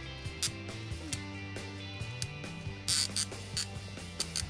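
Push-button spincast fishing reel being cranked to bring in a hooked bass, giving scattered mechanical clicks. There is a short, louder burst of noise about three seconds in.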